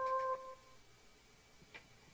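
The song's closing held keyboard chord dies away about a third of a second in. Near silence follows, with one faint click near the end.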